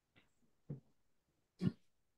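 Two faint, brief scrapes of a whiteboard duster wiping the board, about a second apart, in an otherwise quiet room.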